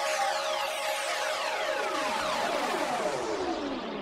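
Electronic synthesizer jingle: many tones glide steadily downward together in pitch over about four seconds, falling from high to low by the end. It is a broadcast sting leading into the score update.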